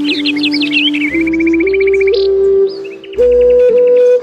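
Calm background music of sustained tones that step upward in pitch, with bird chirps over it in the first second, followed by fast trilling notes.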